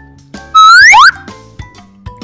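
A cartoon whistle sound effect: a short, loud whistle that rises sharply in pitch for about half a second, a little after the start, over soft background music.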